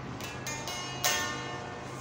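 Les Paul-style solid-body electric guitar played clean: about four single notes picked one after another, each ringing on, the strongest about a second in.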